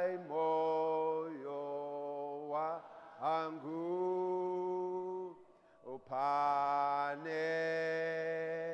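A man singing a slow hymn in long held notes, gliding into some of them, with short pauses between phrases and a longer breath about five and a half seconds in.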